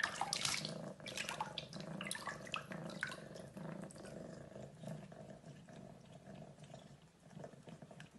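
A cat paws at shallow water in a bathroom sink, making quick small splashes and sloshing. The splashes come thick over the first three seconds, then thin out and fade.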